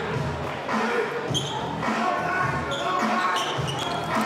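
A basketball bouncing on a hard court in a large arena, about one thud every half-second to second, among indistinct voices and a few short high squeaks.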